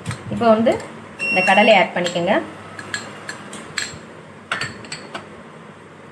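A spoon and a small glass jar knocking and clinking against a glass mixing bowl as peanuts are tipped in and stirred into chopped vegetables, with several short clinks in the second half.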